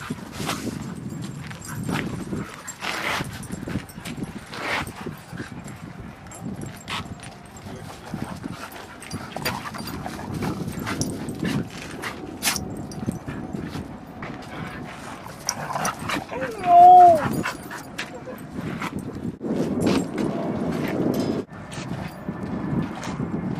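Dogs playing and scuffling, with one short, loud dog call about three-quarters of the way through that rises and then falls in pitch.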